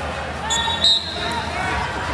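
Several people's voices calling out across a large wrestling arena, with a short high-pitched squeak or chirp around the middle.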